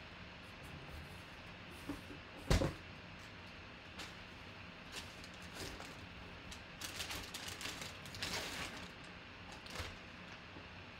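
Handling of a drawstring bag as a football sealed in a clear plastic bag is pulled out of it: soft rustling, one thump about two and a half seconds in, and a stretch of plastic crinkling near the end.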